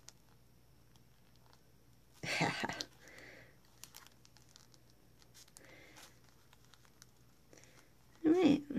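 Faint crinkling and small clicks of a thin clear plastic sheet as fingernails peel a dried nail-polish decal off it, with one louder rustle a little over two seconds in.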